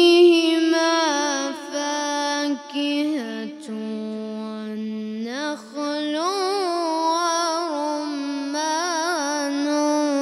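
A boy's voice in chanted, melodic Quran recitation through a microphone. He holds long notes ornamented with wavering runs. His pitch dips lower a few seconds in, then climbs back with quicker ornaments, with brief breaths between phrases.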